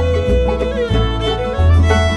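Bluegrass band instrumental break: a fiddle holds and slides through a melody line over string-band backing, with a bass note on each beat.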